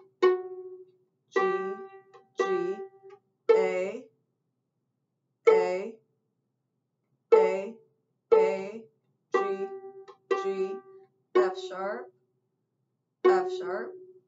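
Viola played pizzicato: single plucked notes, mostly about a second apart with a few pauses, each ringing briefly and dying away, several on the same repeated pitch. It is a slow beginner exercise practising the fourth finger on the A.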